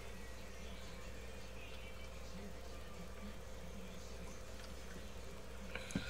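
A steady low hum with faint scattered small sounds, and one short click near the end.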